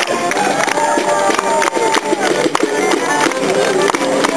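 Live folk music played by a parading folk group, a melody line over sharp percussive strikes, with voices mixed in.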